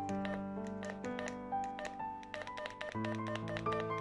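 Background music: sustained chords that change about every second, with a quick run of short, clicky notes over them.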